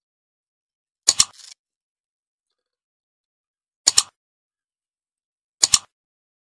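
Small scissors snipping through a bunch of fresh coriander, three separate cuts about a second in, near four seconds and just before the end, each heard as a quick double click.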